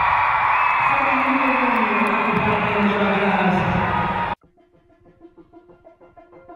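Loud live arena sound: a voice on a microphone over music through the PA, with crowd noise. It cuts off suddenly about four seconds in, and soft keyboard music begins faintly.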